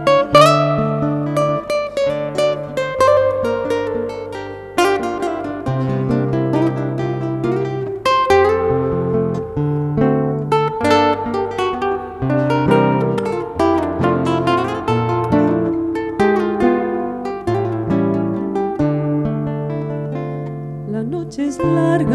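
Instrumental introduction of a slow Argentine zamba: nylon-string acoustic guitars picking the melody over held low bass notes.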